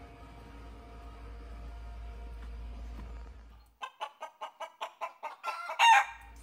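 A hen cackling: a quick run of about a dozen short clucks starting a few seconds in, speeding up and ending in the loudest call. This is the kind of cackle hens give around laying an egg. Before it there is only a low, steady background hum.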